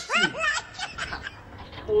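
A person's short snicker for about half a second, falling in pitch, then quiet until a voice begins near the end.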